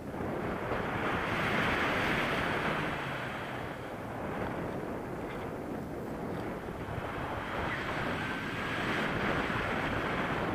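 Wind rushing over the camera microphone of a paraglider in flight, an even roar that swells about a second in, eases off, and swells again near the end.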